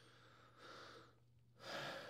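Very quiet breathing into a close microphone: two soft breaths, one about half a second in and one near the end, over a faint steady low hum.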